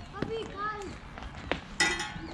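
Faint distant voices in the background, with a short click about three-quarters of the way in and a brief, bright, ringing sound just before the end.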